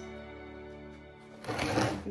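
Background music with sustained tones; about one and a half seconds in, a short rustling scrape of hands working potting soil in a terracotta pot.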